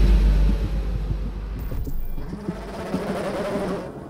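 Loud, rough running noise of a racing car's engine, thinning briefly about two seconds in.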